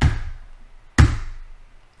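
Two single keystrokes on a computer keyboard, one at the start and a louder one about a second in, each a sharp knock. They are the end of a typed sudo password, sent with the Enter key.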